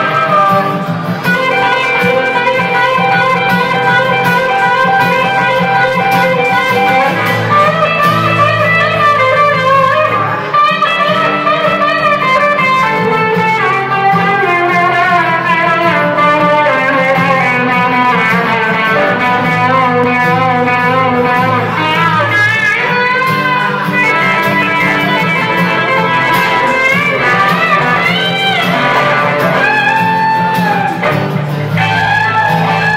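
Live duo of an acoustic guitar strumming chords and an electric guitar playing a lead line with string bends over it, with no singing.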